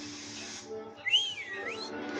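Background music with sustained notes, and about a second in a short whistle that slides up, dips, and rises again.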